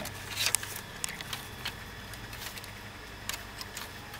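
Irregular light taps and clicks from pigeons moving about inside a bamboo cage, several close together early on and only a few later, over a faint low rumble.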